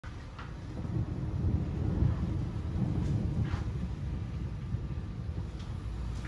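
Distant thunder rumbling from a moderate thunderstorm, swelling about a second in, peaking around two seconds, then slowly dying away.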